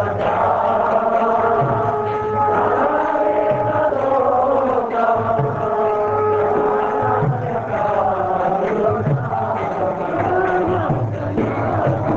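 Group kirtan: many voices chanting a devotional song together over steadily held instrumental notes.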